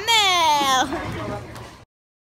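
A high-pitched voice held in a long, falling, cry-like note that breaks off a little under a second in. Fainter sound trails after it, then the track cuts to silence just before the end.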